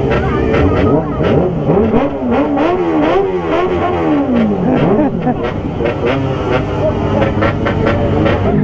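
Sport motorcycle engines being revved in repeated throttle blips, several overlapping, each rising and falling in pitch over a steady low running rumble.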